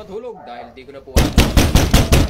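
Rapid knocking on a door: a quick string of about ten knocks, starting about a second in and lasting just over a second.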